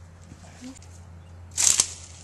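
A sudden, short, loud burst of hiss-like noise about one and a half seconds in, lasting about a third of a second, over a faint steady hum.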